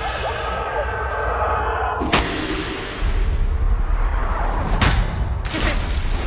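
Film sound design played back over a hall's loudspeakers: a stylised, non-natural soundtrack from the children's point of view, a low rumble that swells about three seconds in, with sharp thuds about two seconds in, near five seconds and again just after.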